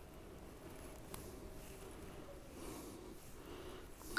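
Faint sniffing as a man smells an opened bottle of beard oil held to his nose, with one small click about a second in.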